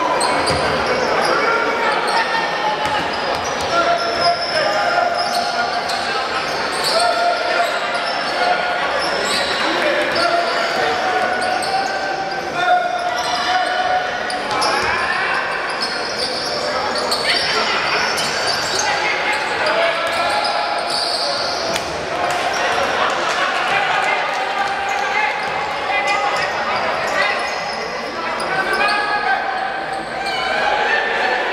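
Live women's basketball game in a large, echoing gym: voices calling and talking over the play, with a basketball bouncing on the hardwood court.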